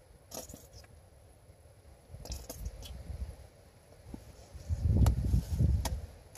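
Quiet handling noises of mustard being put onto a flatbread: a few light clicks and taps, then a run of low bumps and thuds in the last second or so.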